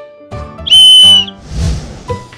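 A small red whistle blown once: a single steady, high-pitched blast lasting about half a second, near the middle, over background music.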